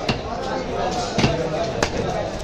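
Heavy curved knife striking through a large wallago attu catfish on a wooden log block: three sharp knocks, one just after the start, one about a second in and one near the end.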